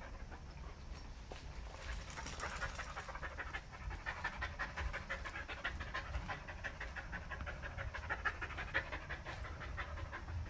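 A dog panting in quick, steady breaths, the panting growing denser about two seconds in.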